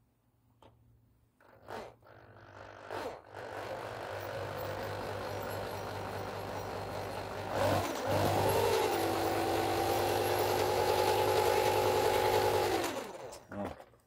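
Corded Black+Decker drill spinning the wind turbine generator's shaft: a few handling clicks, then the drill runs from about three seconds in, speeds up near eight seconds into a steady whine, and stops just before the end.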